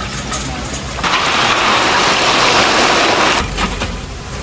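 Battered vegetable fritters deep-frying in a large pan of hot oil, a dense, even sizzle that swells about a second in and drops back near the end.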